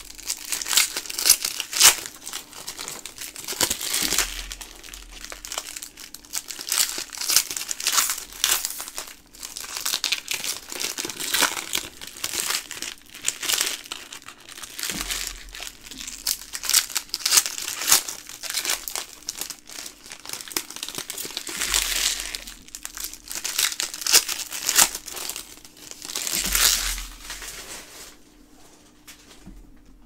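Foil wrappers of Upper Deck Trilogy hockey card packs being torn open and crinkled by hand, in irregular crackling bursts that die away near the end.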